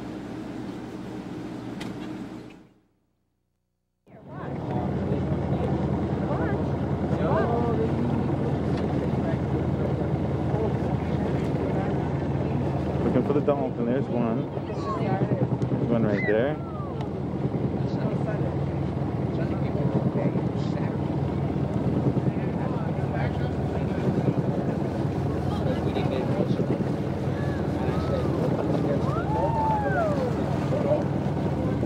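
A boat's engine drones steadily, as heard from on board. The sound cuts out briefly about three seconds in, and indistinct voices come over the drone now and then.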